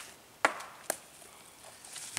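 A flying golf disc striking trees: a sharp wooden knock, then a second, lighter one about half a second later.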